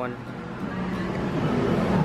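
Steady low background hum of a busy supermarket, with faint voices in it.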